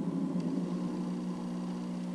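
A steady low mechanical hum with a faint hiss, like a fan running: the room's background noise.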